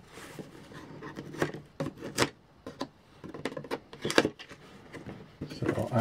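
A sealed cardboard toy box being pried open by hand: an irregular string of scrapes, rubs and sharp little snaps of cardboard, some louder than others.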